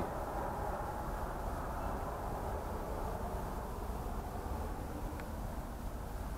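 Steady outdoor background noise, a low rumble with no distinct events, and one faint click about five seconds in.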